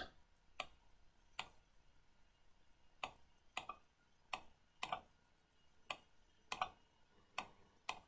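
Computer mouse clicking: about ten faint, sharp clicks at irregular intervals, some in quick pairs, each a dab of the clone brush.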